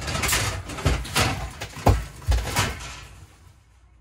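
Old Frigidaire refrigerator's door being pulled open and swinging down, with scraping and rattling and several sharp knocks over the first three seconds, then dying away.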